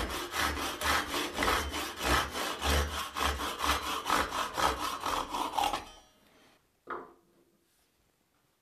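Handsaw cutting through an old wooden hammer handle flush with the steel head, in quick, even strokes that stop about six seconds in. A single short knock follows about a second later.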